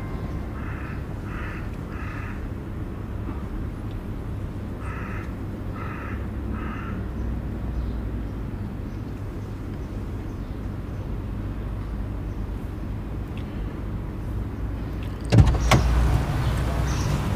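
Steady low rumble of street ambience heard from inside a parked car, with two groups of three short high-pitched tones. About a second before the end a car door opens with a sharp clunk, and the street noise gets louder.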